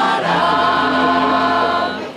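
A women's choir singing long, held notes in several parts, with an accordion accompanying.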